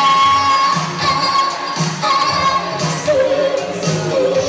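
Live 1980s R&B duet: a female and a male singer performing over the band, with long held vocal notes over a steady beat.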